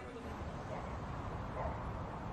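A dog whining faintly, two short soft whimpers over a low background hiss.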